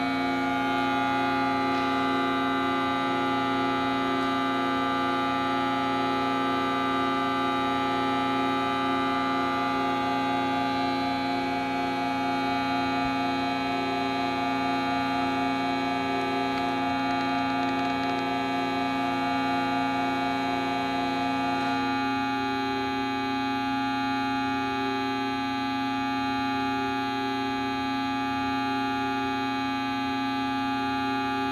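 Homemade air-driven organ of plastic tubing sounding a sustained drone chord of many held tones, with a fast wavering pulse in some of the middle tones. About twenty seconds in, several of the tones cut out and the chord thins.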